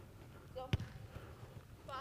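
A single sharp thump of a soccer ball being struck with a pass, about three-quarters of a second in, just after a short spoken "oh".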